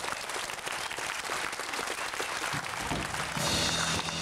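Audience clapping and applauding as a song ends. A little after three seconds in, the band starts playing again with steady instrument tones and a cymbal.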